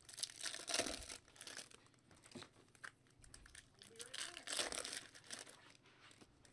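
Foil trading-card pack wrappers being torn open and crumpled by hand: two bursts of crinkling about a second long, one right at the start and one about four seconds in, with small clicks of card handling between.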